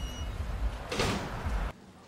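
City street noise: a low rumble and a hiss that swell to a peak about a second in, then cut off suddenly.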